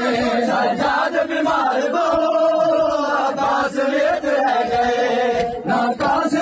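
Male noha reciters chanting a Saraiki Muharram lament into a microphone, a slow, held melodic line that wavers and sustains without pause.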